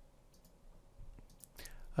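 A few faint, scattered computer mouse clicks as the pointer works the Registry Editor tree.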